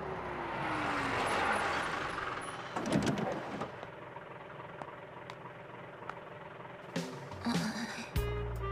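A bus pulling in to a stop: its running noise swells while the engine note falls as it slows. A loud low burst about three seconds in comes as it halts, then it idles at the stop, with a few clicks near the end.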